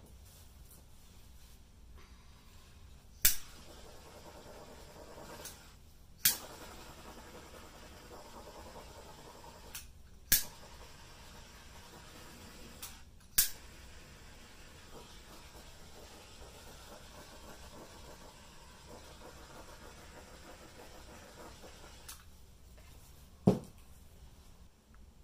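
Five sharp clicks at irregular gaps of a few seconds over a faint, steady background hiss.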